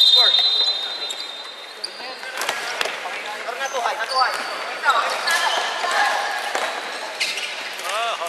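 A referee's whistle held on one high note, cutting off just over a second in, to start play from a face-off. Then sneakers squeak on the wooden gym floor, and sticks click against the ball as players run and shout.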